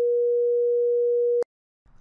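A pure 480 Hz sine-wave tone, generated at 24-bit resolution, holding one steady pitch with no added noise. It stops abruptly with a click about a second and a half in.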